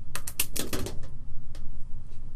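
A pen knocking and clattering against a desk or tablet: a quick run of sharp clicks in the first second, then a single click about halfway through.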